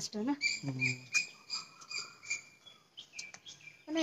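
A small animal's high-pitched chirping: a quick run of short, piercing notes, then a few notes sliding downward about three seconds in.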